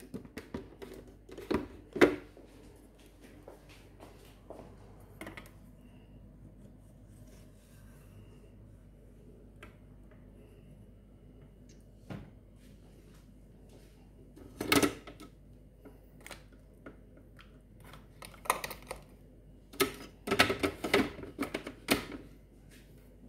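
Scattered plastic clicks and knocks of kitchen appliance parts being handled and fitted together, with a louder knock about two-thirds of the way through and a run of clattering near the end; a low, steady room hum sits between them.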